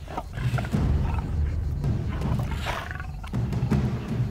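A lion growling low, over dramatic background music.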